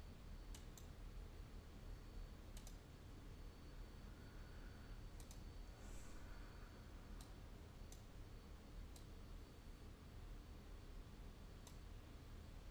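Faint, scattered clicks of a computer mouse, about nine in all, some in quick pairs like double-clicks, over a low steady room hum.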